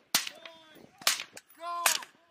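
Rifle fire: three sharp shots, one near the start, one about a second in and one near the end. A short shouted call comes just before and under the last shot.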